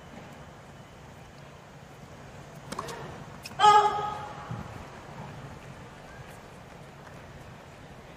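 Tennis ball struck with sharp pops during a rally, over a hushed stadium crowd. About three and a half seconds in comes a short loud vocal grunt from a player as she hits the ball.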